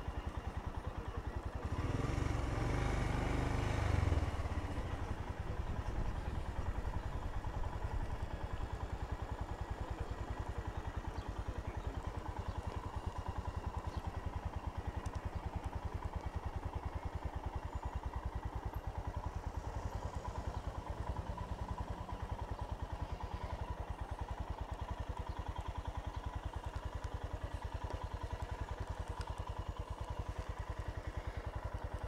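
Royal Enfield Himalayan's single-cylinder engine running with an even, steady beat. It gets louder for a couple of seconds early on, then settles back to a steady low-speed run.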